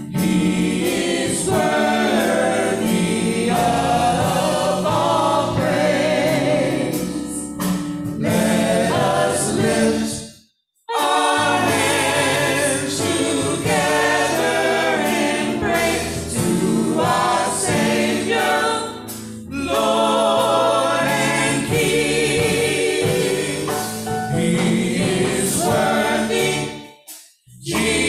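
Small gospel vocal group of four singers on microphones singing together, several voices in harmony. The sound cuts out suddenly for about half a second around ten and a half seconds in, then the singing resumes.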